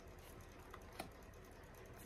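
Near silence with two faint clicks about a second in: oracle cards tapping and sliding as they are handled and moved off the deck.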